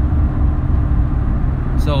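A steady low rumble with a faint constant hum running under it.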